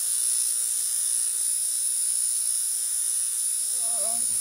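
Steady high-pitched chirring of night insects, such as crickets, over a faint low hum; a brief voice sound comes at the very end.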